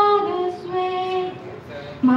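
A girl singing solo without accompaniment: one phrase of long held notes that steps down in pitch and fades out near the end.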